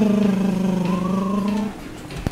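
A person's voice holding one long, steady note, like a hum or a drawn-out vocal engine noise, which stops abruptly shortly before the end.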